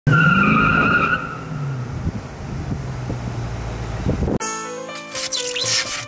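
A car, a Dodge Charger, with its engine revving and tyres squealing in the first second. The engine keeps running for about four seconds, then cuts off abruptly as a music track with keyboard notes begins.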